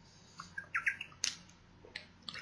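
A man drinking water: faint sips and swallows with a few short squeaky sounds, and a click about a second in.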